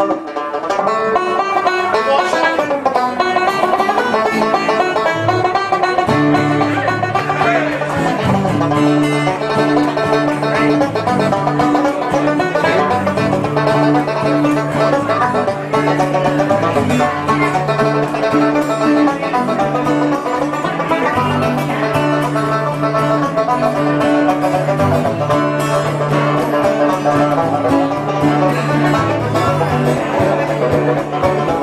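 Live band playing, with a banjo picking out the lead over strummed acoustic guitar. A bass line comes in about six seconds in.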